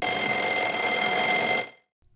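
Mechanical twin-bell alarm clock ringing, its hammer rattling rapidly against the bells, then stopping and dying away after about a second and a half.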